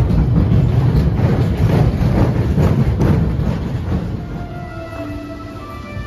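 Mine-train roller coaster cars running on their track: a loud rumble with rattling clatter that fades about four seconds in. Music comes in near the end.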